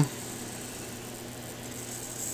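Steady faint hiss with a low mains-like hum: quiet room tone, with no distinct sound events.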